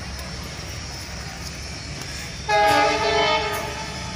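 An Indian Railways diesel locomotive sounds its horn once, midway through: a loud multi-tone blast about a second long that then fades. A steady low rumble runs underneath.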